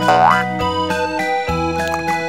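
Children's background music played on an electric-piano-like keyboard, with a short rising pitch-glide cartoon sound effect in the first half second.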